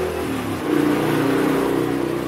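A motor vehicle's engine running steadily as it goes by, a low even hum that rises about half a second in.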